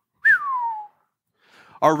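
A single human whistle: one short note, under a second, sliding down in pitch from high to lower.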